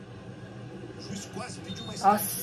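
Faint football match broadcast playing in the background: a commentator's voice comes and goes over a low, steady background.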